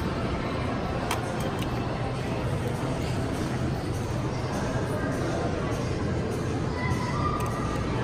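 Steady shopping-mall background: a low hum with faint distant voices and music.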